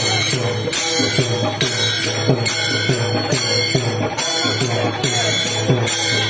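Many pairs of small brass hand cymbals (Warkari taal) clashing together in a steady fast rhythm, with a two-headed barrel drum (mridang) beating under them.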